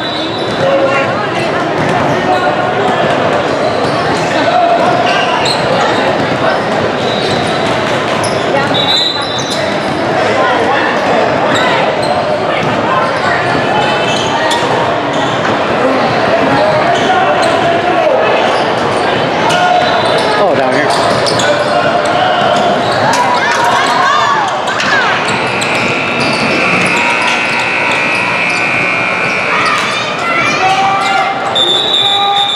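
Basketballs bouncing on a hardwood gym floor, over voices talking throughout and echoing in the large hall.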